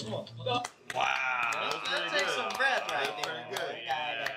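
Voices talking, with several sharp hand claps in the second half.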